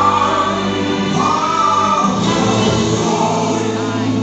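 Gospel choir singing sustained notes with grand piano accompaniment.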